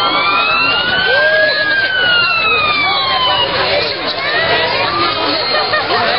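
Emergency vehicle siren wailing: one slow sweep that climbs to a peak about a second and a half in, then falls away and stops about halfway through, over crowd chatter.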